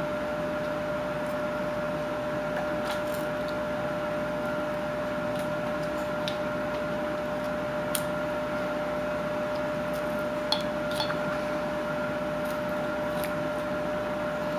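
Carving knife cutting into a wooden block by hand: scattered short, crisp clicks and scrapes as chips are sliced off, the clearest about eight and ten and a half seconds in. A steady hum runs underneath throughout.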